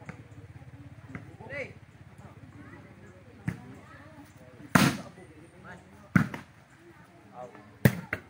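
A volleyball being struck by players' hands and forearms during a rally: four sharp smacks about a second and a half apart, the loudest near the middle.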